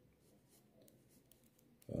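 Ballpoint pen faintly scratching on paper in a few short strokes as a number is written. A man's voice starts right at the end.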